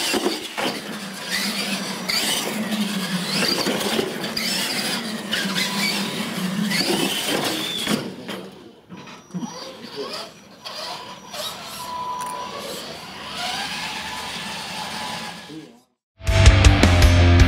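Electric RC monster trucks of the Tamiya Clod Buster type racing on a tiled floor. Their electric motors whine up and down with the throttle, with tyre squeals and knocks from the jumps.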